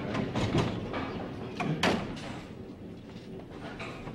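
Bowling ball rolling down a lane and hitting the pins, with the sharpest, loudest crash a little under two seconds in.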